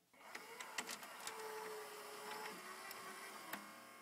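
Faint whirring of a small motorized mechanism, with a thin steady tone and a few light clicks, one of them about three and a half seconds in.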